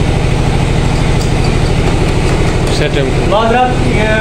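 Peter-type single-cylinder diesel engine running steadily, driving a dynamo that powers a stick-welding plant, with a low, even, pulsing hum.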